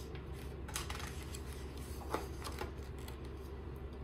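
A page of a hardcover picture book being turned by hand, with soft paper rustles and crinkles about one second and two seconds in, over a steady low room hum.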